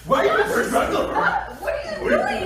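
People talking with chuckling laughter.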